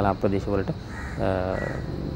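A crow cawing about a second in, heard under a man's narration.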